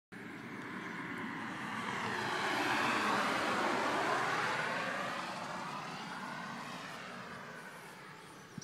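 A passing vehicle: a rushing engine and air noise that swells to its loudest about three to four seconds in, then fades away.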